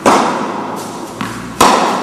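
Tennis ball struck by rackets twice, about one and a half seconds apart as in a rally, each sharp hit followed by a long echo. A softer knock comes just before the second hit.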